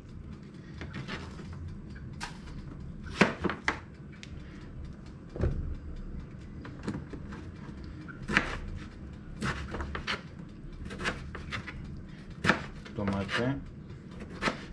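Kitchen knife slicing a tomato on a plastic cutting board: scattered, irregular knocks of the blade meeting the board, about a dozen, over a steady low hum.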